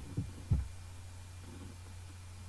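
Steady low background hum, with two soft low thumps in the first half-second.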